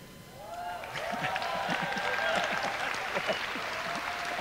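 Audience applauding, with several voices calling out over the clapping; it builds up about half a second in and holds steady.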